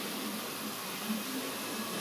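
Steady hiss of workshop background noise, with no distinct knocks or machine sounds.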